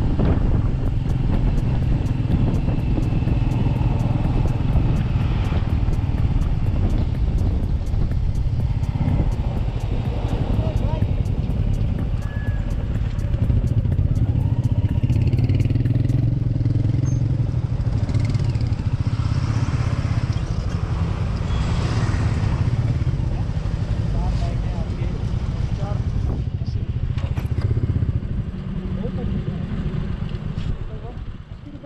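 Motorcycle engine running steadily with the bike in motion, then slowing to a stop among other motorcycles. The engine sound eases off near the end, with voices nearby.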